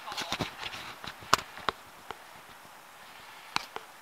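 A few sharp, isolated knocks and clicks over faint outdoor background, the loudest about a second and a half in and two smaller ones near the end.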